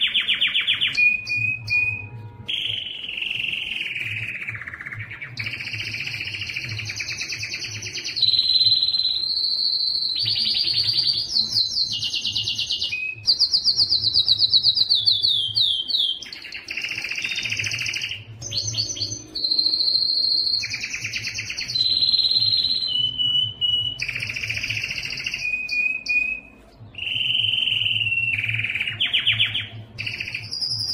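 Domestic canary singing a continuous song of tours: sections of a second or two each, some high steady notes, some fast rattling trills of repeated notes, passing from one to the next almost without a break. There is one short gap a little before the end.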